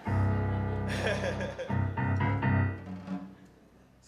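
Stage keyboard playing low piano chords: one struck at the start and left to ring, a few more about two seconds in, then dying away. A short laugh about two seconds in.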